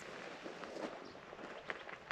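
Faint footsteps on gravelly desert ground, a few soft, irregular steps.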